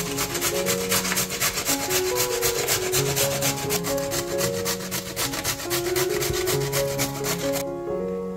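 Carrot being grated on a stainless-steel box grater: quick rasping strokes, about five a second, stopping shortly before the end.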